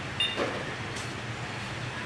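K9 automatic thermometer and sanitiser dispenser switched on: a short electronic beep about a quarter second in, then a single sharp click about a second in, over a steady low hum.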